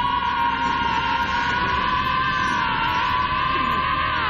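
An animated character's long held power-up scream, one unbroken high yell at a steady pitch, over a low rumble.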